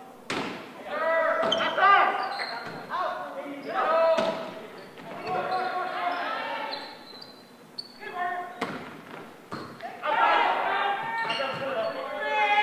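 Volleyball rally in a large gym: a leather volleyball struck with sharp smacks, the first as the serve is hit just after the start and several more during the rally, among players' shouts and calls that echo in the hall.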